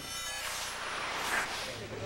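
Arena crowd applauding steadily after the skating program, with a whoosh of a broadcast replay transition over it at the start.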